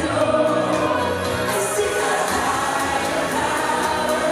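A woman singing a pop song live into a handheld microphone, with musical accompaniment and choir-like backing vocals.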